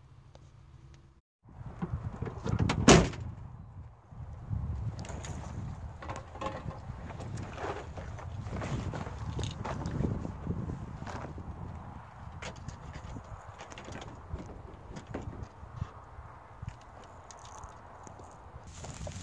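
Gear being handled at the bed of a pickup truck: a loud slam about three seconds in, then scattered knocks, clicks and rustling.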